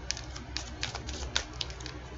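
A deck of tarot cards being shuffled by hand: a run of sharp, irregular clicks as the cards snap against each other.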